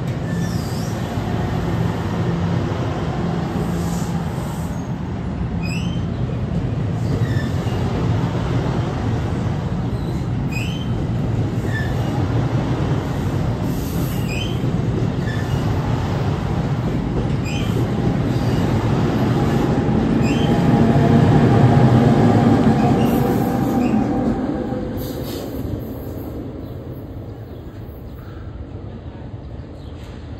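NJ Transit multilevel commuter coaches rolling past along the platform: a steady rumble of wheels on rail with brief wheel squeals every second or two. It is loudest about twenty seconds in, then fades over a few seconds as the train clears.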